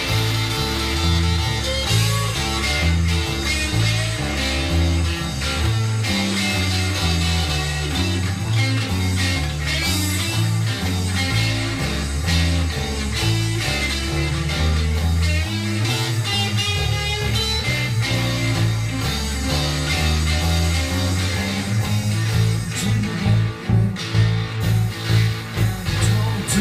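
Blues band playing an instrumental break: an electric guitar lead with wavering, bent notes over a stepping bass line and drums. The drums grow louder and more pulsing near the end.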